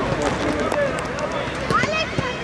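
Distant, unintelligible shouting and calls of children playing football on an outdoor pitch, with a few sharp clicks, and a rising shout near the end.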